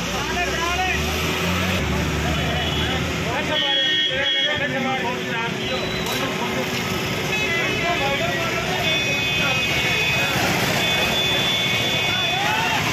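Street-market din of people's voices and shouts, with a vehicle engine rumbling during the first few seconds. Vehicle horns toot briefly about three seconds in and again over the last few seconds.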